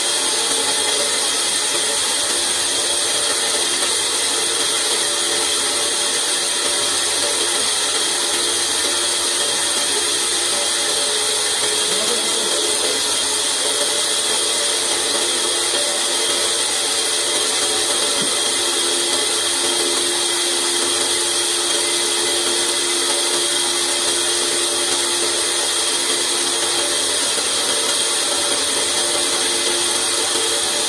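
Large vertical band saw running steadily and ripping a long wooden plank lengthwise.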